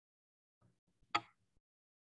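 Near silence, broken by a single short knock or click about a second in.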